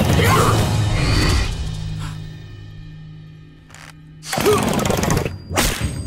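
Cartoon fight-scene soundtrack: dramatic music and hits that die away to a quiet held chord, then a sudden loud hit about four seconds in. Near the end comes a sharp crack as a wooden bo staff is snapped in two.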